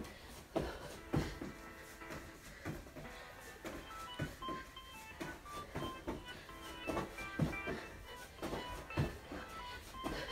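Background music with a melody of short, bright notes, over irregularly spaced thuds of feet landing on a carpeted floor during jump squats.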